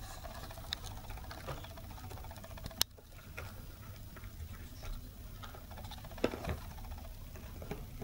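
Toy poodle puppies nosing and chewing a metal-pinned slicker brush on carpet: scattered small clicks and scratches, with a sharp click about three seconds in and another after six seconds.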